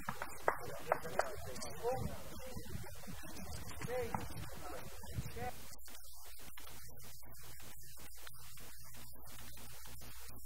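Background voices of a group of men, with a few sharp clicks in the first two seconds. About five and a half seconds in, the background gives way to a steady low hum of room tone.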